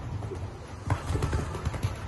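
Horse cantering on arena sand, its hoofbeats dull thuds that come louder and sharper from about a second in, with music in the background.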